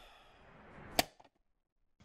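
Editing sound effect: a rising whoosh that builds to a single sharp crack about a second in, then cuts off into silence.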